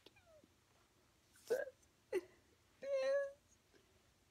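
A cat meowing: three or four short meows, each about half a second long, rising and then falling in pitch.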